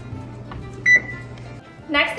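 Electronic oven control panel giving a single short, high key beep about a second in as the Start key is pressed, over a low steady hum that cuts off near the end.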